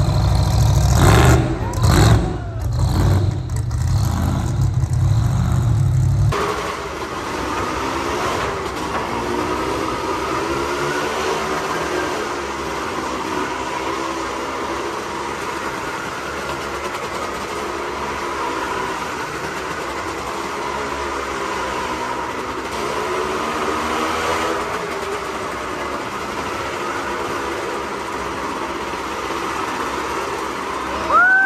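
Engine of a rat-rod pickup with open exhaust headers running loud and revving on a dirt track. About six seconds in it cuts to motorcycles riding a wall-of-death motordrome, their engine notes rising and falling in repeated waves as they circle the wall.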